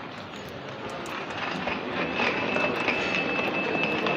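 Luggage trolley rolling along a hard floor: a steady rolling noise that grows louder partway through, with a thin high whine joining about halfway.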